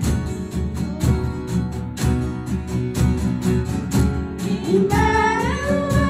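A live worship band playing, with a steady drum beat under keyboard and other instruments. About five seconds in, a woman's singing voice slides up into a long held note.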